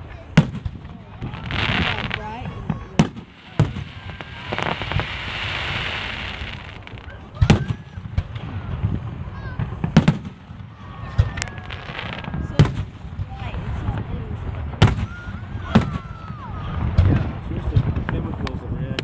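Aerial fireworks shells bursting overhead: about ten sharp booms at uneven intervals, with stretches of crackling and hissing between them.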